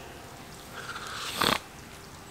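A man's tearful breathing: a soft breath, then one sharp sniff through the nose about one and a half seconds in.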